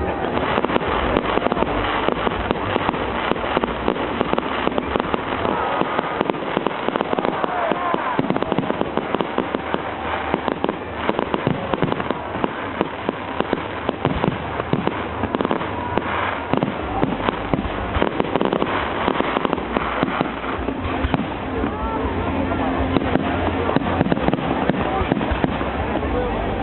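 Fireworks display: aerial shells bursting in a rapid, continuous run of bangs and crackles.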